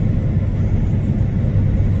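Steady low drone of engine and road noise inside a truck cab cruising at highway speed.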